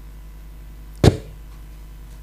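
A single sharp thump about a second in, heavy in the low end, picked up close on the podium microphones, over a steady low hum.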